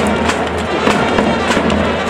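Japanese baseball cheering section playing a batter's fight song in the stands: band music and crowd noise with sharp regular beats about three times a second, like drums or clappers.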